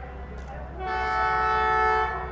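Diesel locomotive air horn sounding one long blast of several tones together, starting about a second in, over a steady low hum.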